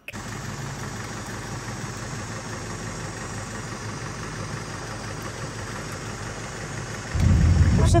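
A vehicle engine running steadily under an even background noise, then a much louder, deeper engine rumble starting about seven seconds in.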